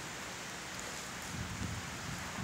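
Steady outdoor background hiss, with low wind rumble on the phone's microphone in the second half.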